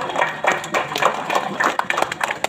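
Scattered hand claps from a small crowd, irregular and several a second, over low crowd voices.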